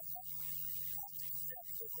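Steady electrical mains hum, with faint short blips of tone scattered over it.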